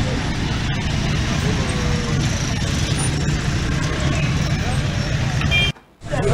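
Busy street traffic: cars and motorcycles running, with voices in the background. A brief horn toot comes near the end, just before the sound cuts off suddenly.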